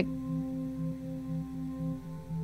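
Binaural-beat backing track: a steady drone of several sustained tones, with a low tone pulsing evenly a few times a second.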